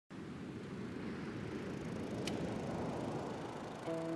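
Steady low rumbling noise with a single faint tick a little past halfway; a guitar note starts just at the end.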